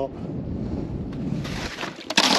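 Snowmobile idling: a low, rough rumble that drops away near the end.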